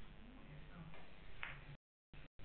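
Faint billiard-hall room sound: a low murmur of distant voices with one short click about one and a half seconds in. The sound cuts out completely just before the end.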